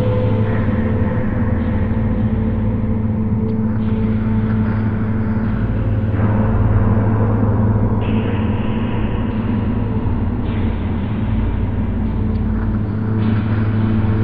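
Dark ambient music: a steady, loud low drone and rumble with sustained deep tones and no beat.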